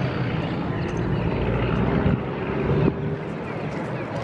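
A steady low engine-like drone, with a faint hum on top that stops suddenly about three quarters of the way through.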